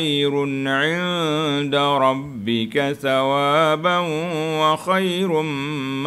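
A man reciting Quranic verses in Arabic in a melodic chant, holding long wavering notes, with a short break midway.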